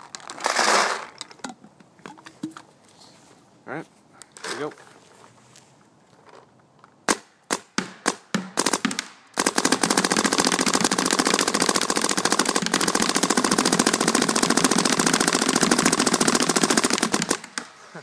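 Shocker SFT electropneumatic paintball marker firing: several single shots about seven seconds in, then a sustained rapid string of about fifteen shots a second in ramping mode for roughly eight seconds, which ends abruptly.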